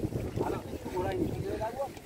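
Strong, gusty wind buffeting the microphone with a constant low rumble, and people talking in the background.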